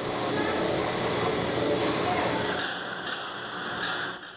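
Chocolate factory production-line machinery running: a steady, dense mechanical din with a few thin high whines, the hiss getting stronger in the second half.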